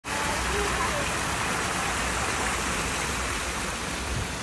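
Water from a tiered fountain pouring off the rim of its bowl in many streams and splashing into the basin below: a steady rushing splash.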